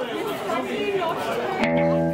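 Audience chatter in a large room, then about a second and a half in a guitar chord is struck and rings on, opening the song.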